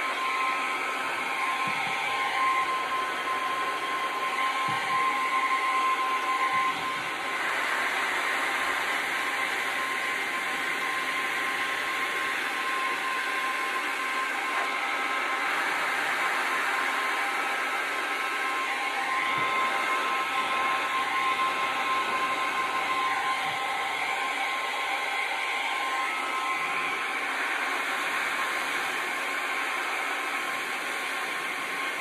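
Steinel HL 2020 E heat gun blowing steadily, a loud rush of air with a thin, steady whine from its fan motor, as it is played over wet resin to push the waves and open cells.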